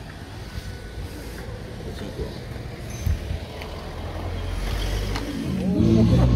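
A low motor-vehicle engine rumble that grows steadily louder, with faint voices; music comes in at the very end.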